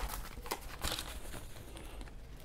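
A few brief rustles and light scrapes of a paper-faced brass sheet being handled and laid on a sheet of lined paper.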